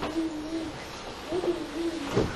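A person's voice holding a drawn-out, level hesitation sound ("yyy"), trailing off about two-thirds of a second in, then a second, shorter one a little past halfway.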